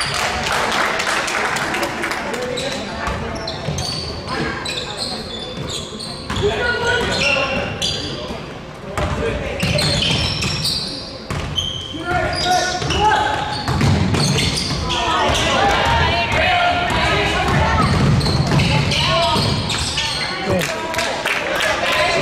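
Basketball game in a gym: a ball repeatedly bouncing on the court, with indistinct shouts and voices of players and spectators echoing in the hall.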